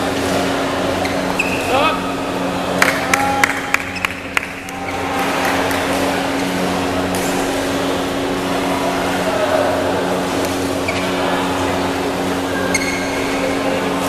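Badminton hall ambience: indistinct voices of players and spectators over a steady hum. A quick run of sharp clicks comes about three seconds in, and brief squeaks of shoes on the court mat come near the end.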